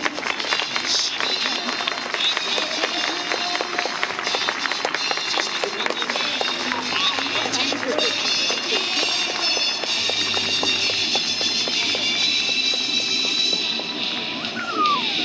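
Stadium public-address music playing over the loudspeakers, with an announcer's voice over it during the starting-lineup presentation.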